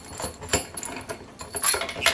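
Metal clinking and scraping as a homemade bottom bracket press is taken apart: a nut is spun off the threaded rod, and the rod and press cups are pulled out of the bike's bottom bracket shell. There are a couple of sharper clinks, one about half a second in and one near the end.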